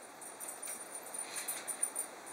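Faint handling noise: light rustling and small scattered clicks from a hand holding and tapping a smartphone, with a sharper click near the end.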